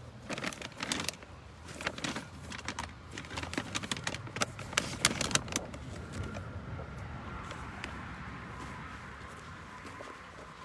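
Phone and microphone being handled and fumbled with while the mic is plugged in: a run of clicks, knocks and rubbing for about the first six seconds, then a faint steady tone.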